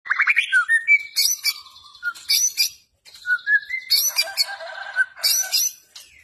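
White-rumped shama (murai batu) singing: varied phrases of gliding whistles and harsh, high chattering notes, with a short pause about three seconds in.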